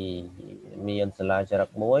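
Speech only: a man lecturing. He holds a long drawn-out vowel, a hesitation sound, that ends just after the start, then goes on in short choppy syllables.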